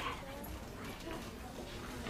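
Murmur of several children's voices talking quietly among themselves in a classroom, with no single voice standing out.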